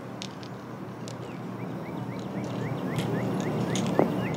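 Outdoor golf-course ambience while a tee shot is in flight: a low steady rumble that slowly grows louder, with a bird chirping repeatedly from about a second in, in short rising chirps about three times a second.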